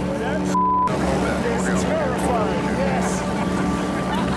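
A short censor bleep, one steady beep covering a word about half a second in, over talk, with a steady low mechanical drone underneath throughout.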